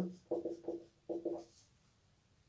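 Marker pen writing on a whiteboard: a quick run of about seven short, squeaky strokes in the first second and a half as symbols are written.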